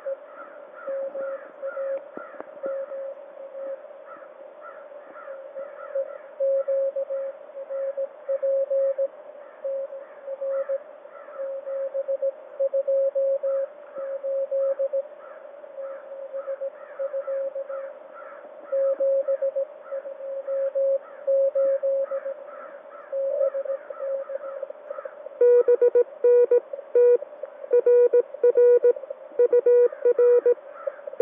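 Morse code (CW) tone from a QRP ham transceiver's speaker: a received station keying a signal report in dits and dahs over faint receiver hiss. About 25 seconds in, a louder, slightly lower and cleaner keyed tone takes over, the transmitter's sidetone as the local operator sends his reply.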